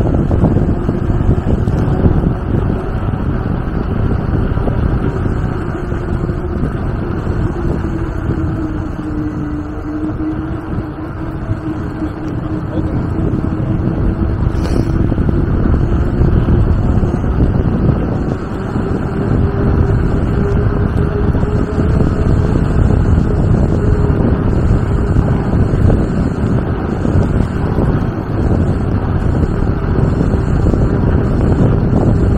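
Wind buffeting the microphone of a handlebar-mounted camera on a bicycle riding uphill: a loud, steady low rumble. Under it runs a faint hum that sinks in pitch about a third of the way in and then rises again, with one faint click about halfway through.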